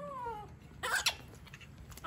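Baby monkey crying: a falling, whining call, then a short shrill screech about a second in.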